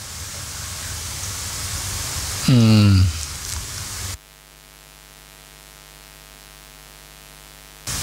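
Steady hiss from a hall sound system, with one short word in a man's voice about two and a half seconds in. About four seconds in the hiss cuts off suddenly, leaving a faint, steady electrical hum.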